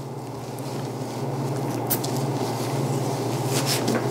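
Curved knife slicing fat and outer skin off a piece of game meat on a stainless-steel table: soft, steady scraping and squishing that grows louder, with a couple of light clicks of the blade against the steel, once in the middle and again near the end. A steady low hum runs underneath.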